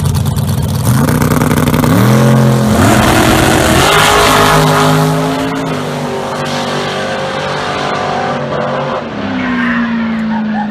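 A Vega-bodied drag car and a dragster launch off the start line about a second in. Their engine note climbs in several steps as they accelerate, then holds and fades as they run away down the strip.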